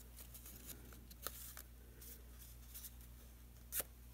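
A paper tag strip being folded by hand along its lines: faint paper creasing and handling with a few soft ticks, the loudest near the end, over a low steady hum.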